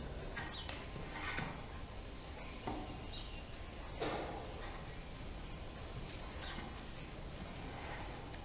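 Steady low rumble of a freestall dairy barn, with four short scraping or knocking sounds, the loudest about four seconds in.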